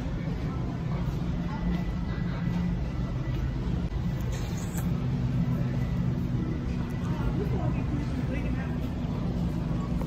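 Steady low rumble and hum of a big store's interior, with faint voices in the background.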